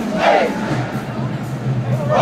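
Marching band members shouting a chant call in unison as they march, loudest about a quarter second in. A low steady hum comes in under the voices after about two-thirds of a second.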